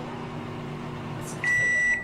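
Microwave oven beeping once, a steady high electronic tone lasting about half a second near the end, signalling that the heating has finished. Underneath, a steady low hum.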